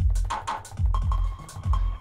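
Electronic drum samples finger-drummed live on a Maschine Jam controller's pads: a few heavy kick drum hits with sharp, clicky percussion hits between them.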